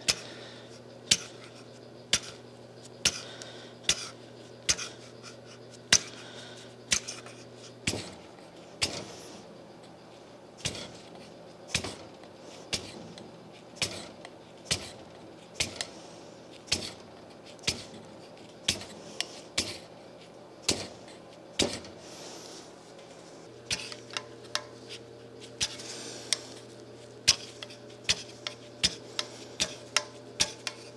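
Hand flaking of a milling machine's ground ways: the back of a steel scraper blade is struck and rocked across the cast-iron surface, giving sharp metallic clicks about once a second. Each stroke cuts a shallow pocket for oil to pool in. A steady low hum runs underneath.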